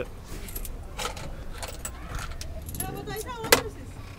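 Small clicks and jingling rattles from moving about in a truck cab, with a sharper click about three and a half seconds in, over a steady low hum.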